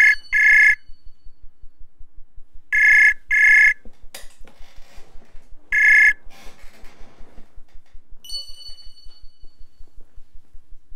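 Outgoing web-call ringback tone. Loud, bright double beeps repeat about every three seconds, and the third ring breaks off after one beep when the call is picked up. About eight seconds in, a different, higher steady tone starts and holds.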